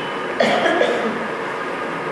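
A single short cough about half a second in, over a steady background hum.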